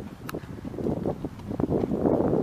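Wind buffeting the microphone, an uneven, gusting noise that rises and falls.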